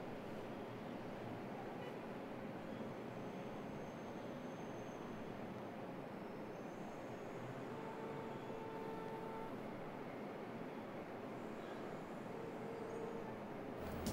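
Quiet, steady room ambience: an even background hiss and hum with no distinct events, and a couple of faint brief tones about eight to ten seconds in.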